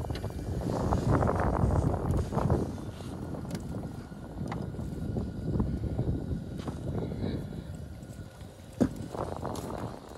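Fishing boat moving across a lake under power: a steady rush of motor and water noise with wind on the microphone, loudest in the first few seconds and then easing off. There is a sharp knock near the end.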